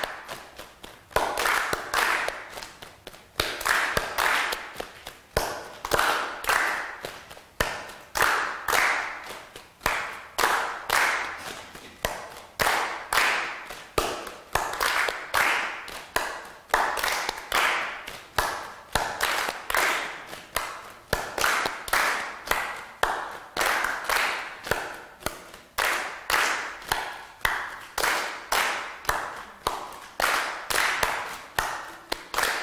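Hands clapping a repeating minimalist rhythm of quarters and eighths in two parts, one part clapping every fourth beat a little short so that it gradually drifts ahead of the other, phase-style. The claps come in short groups that repeat about every two seconds.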